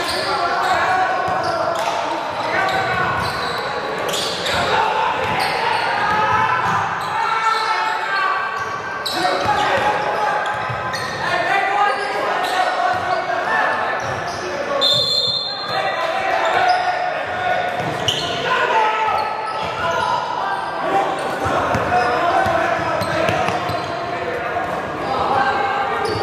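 Basketball dribbling and sneaker footfalls on a hardwood gym floor under indistinct shouts and chatter from players and the bench, all echoing in a large hall. A short, high-pitched whistle sounds about fifteen seconds in.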